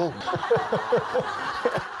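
Laughter: a run of about seven short "ha" bursts, each falling in pitch.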